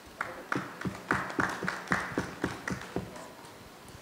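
Brief applause from a few people clapping, about three or four claps a second, dying away about three seconds in.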